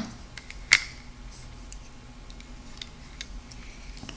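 Small scattered clicks of a plastic hook and rubber bands against the plastic pegs of a Rainbow Loom as bands are hooked over, with one sharper click under a second in.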